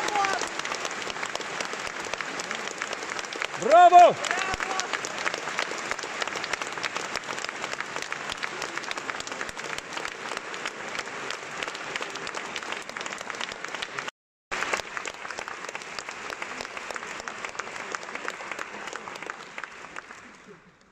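Concert-hall audience applauding steadily after a sung aria, with one loud shout from the crowd about four seconds in. The applause cuts out for a moment midway and fades away at the end.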